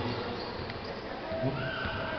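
Crowd and court noise of an indoor basketball game, with a short nearby voice about one and a half seconds in and a high drawn-out squeal near the end.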